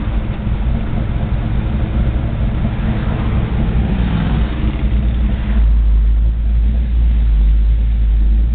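A 1970 Chevrolet Chevelle's 454 big-block V8, heard from inside the cabin, running as the car moves slowly in traffic. The engine note rises briefly about four seconds in, then a deep low rumble takes over and grows louder for the rest.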